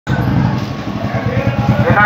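A motorcycle engine running as it passes close, under a Hindi public announcement from a police vehicle's roof-mounted loudspeaker.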